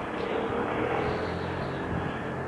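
A canal boat's engine running steadily with an even low hum.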